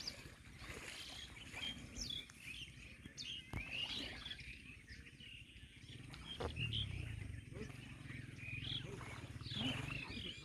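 Wild birds calling: many short, high chirps and whistles from several birds, overlapping and irregular. Beneath them runs a low rumble that swells in the second half.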